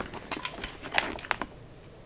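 A hand rummaging in a clear plastic gift bag, with light rustling and a few small sharp clicks about a second in as an item is taken out.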